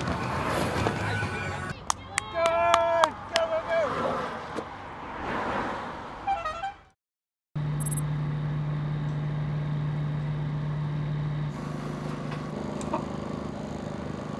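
Roadside spectators cheering and calling out as a time-trial rider goes by, with a few sharp claps and a loud pitched call about two and a half seconds in, the noise fading after about six seconds. After a brief cut to silence there is street ambience with a steady low hum.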